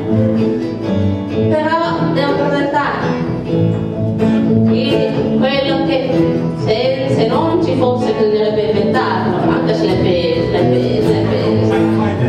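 A live acoustic ensemble playing and singing: a group of voices over acoustic guitars, violins and a double bass.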